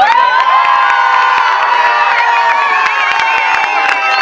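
A crowd breaking into loud cheering and screaming, many voices rising together into one long held shout.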